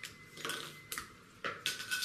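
Hard plastic construction-kit parts clicking and knocking together as they are picked up and handled: a handful of sharp, separate clicks.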